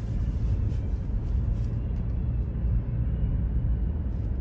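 A vehicle's engine and road noise heard from inside the cabin while driving at low speed: a steady low hum with no distinct events.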